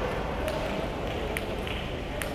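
Table tennis balls clicking sharply a few times on tables and bats, over a steady murmur of voices.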